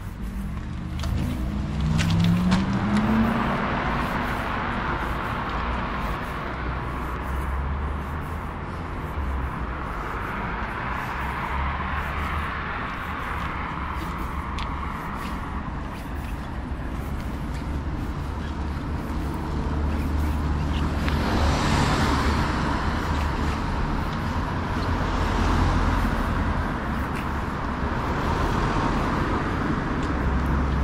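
Cars passing on a road one after another, each a swell of tyre and engine noise that rises and fades, the loudest about two-thirds of the way through. In the first few seconds one car accelerates with its engine note rising. Steady footsteps on pavement tick faintly beneath.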